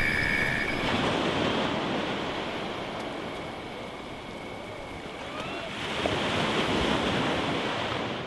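Surf on a beach, a steady rushing wash of waves that eases off in the middle and swells again about six seconds in.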